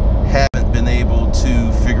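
Steady low road and engine rumble inside a moving car's cabin, under talking, with the sound cutting out for an instant about half a second in.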